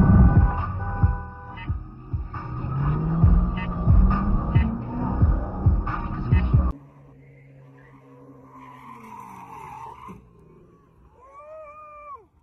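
Car driving at speed: heavy low rumble with the engine note rising as it accelerates, mixed with music. About two-thirds of the way through it cuts off abruptly to a much quieter scene, with a short wavering call near the end.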